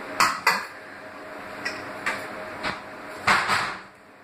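A man blowing out short, sharp breaths through pursed lips against the burn of a raw Carolina Reaper chilli: two quick puffs near the start, a few fainter ones, then a longer, harder blow near the end.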